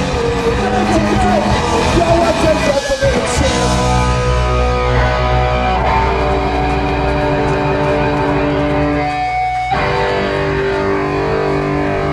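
Punk rock band playing live with electric guitars, bass and drums, a shouted vocal over the band for the first three seconds or so. The vocal then drops out and the band holds long ringing chords, shifting to a new held chord just before the end.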